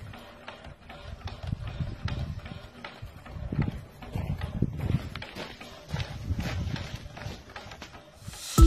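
Small steam engine of a coal-fired steam bike running at a standstill: irregular low puffs with a light, fast clicking from the mechanism.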